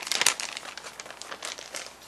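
Plastic mailer bag crinkling as it is handled, with a loud burst of crackles in the first half second, then lighter rustling.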